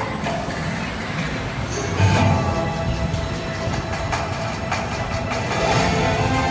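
Roller coaster car rolling along its steel track: a continuous rumble with light rattling and clicks, growing louder about two seconds in.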